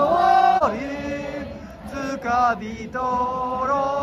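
Football supporters singing a chant in unison, voices holding long notes and sliding between them.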